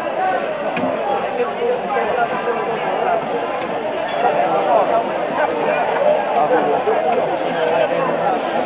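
A group of people talking over one another: steady, overlapping chatter with no single clear voice.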